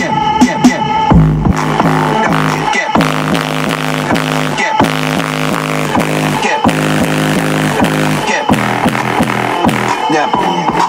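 Loud electronic dance music with a steady, heavy beat, played through a competition car-audio system of eighteen 15-inch MTX subwoofers powered by Rockford Fosgate amplifiers and heard inside the car's cabin. A deep bass hit comes about a second in.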